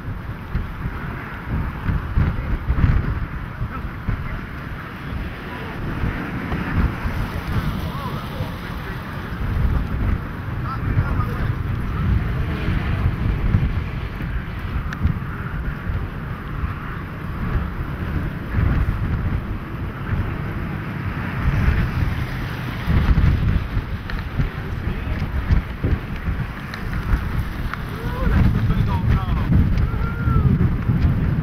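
Gusty wind buffeting the camera microphone, a rough low rumble that swells and eases in gusts.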